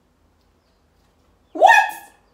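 A woman's short, high-pitched vocal squeal, rising sharply in pitch, about one and a half seconds in after a quiet stretch.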